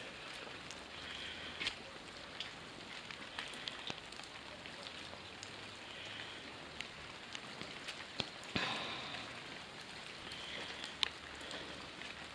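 Steady rain falling on wet paving and garden beds, with scattered sharp drops tapping through it.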